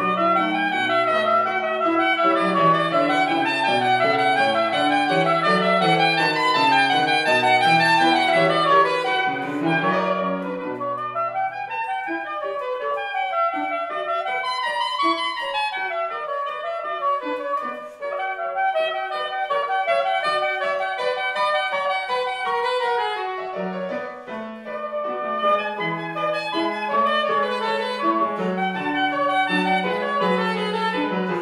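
Soprano saxophone playing classical music with piano accompaniment. In the middle the low piano notes drop out and the line moves in quick rising and falling runs; the low accompaniment returns near the end.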